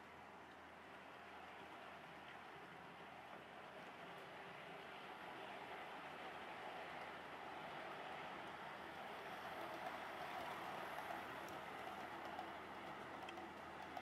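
Hornby Class 60 OO gauge model locomotive, with a five-pole central can motor, hauling a train of container wagons on the track: a faint, steady rolling and motor hum that grows gradually louder as the train approaches.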